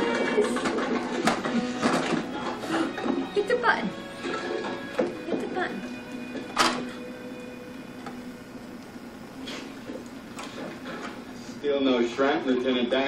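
Indistinct speech and music from a television playing in the room, loudest in the first few seconds, with a single sharp knock about six and a half seconds in.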